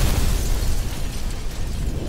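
A car explosion: the blast fades into a deep, slowly dying rumble.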